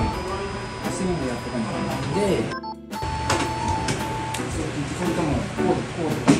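Background music, with voices, broken by a brief silent gap about two and a half seconds in.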